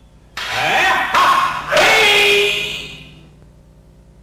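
Loud kiai shouts from two aikido practitioners performing a paired wooden-sword kumitachi, with sharp clacks of the wooden bokken striking together. Three loud onsets come in the first two seconds, then the sound fades out about three seconds in.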